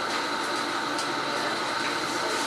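Steady background noise of a lecture room with no speech: a constant hiss with faint steady hum tones.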